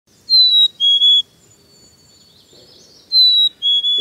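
A bird whistling a clear two-note song, a higher note sliding slightly down followed by a lower held note, sung twice with a pause between.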